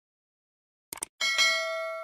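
A short double mouse-click sound effect about a second in, followed at once by a bright bell ding that rings on with several steady tones and slowly fades: the stock sound of a subscribe-button and notification-bell animation.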